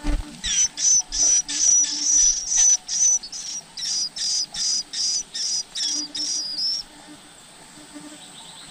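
Small songbirds chirping at a nest with begging chicks: a run of about fifteen short, high, thin chirps, two or three a second, starting about half a second in and stopping shortly before the end. A brief low thump sounds at the very start.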